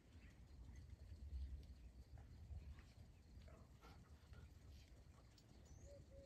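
Near silence: faint outdoor ambience with a low rumble and a few faint bird chirps, and a dove-like coo starting right at the end.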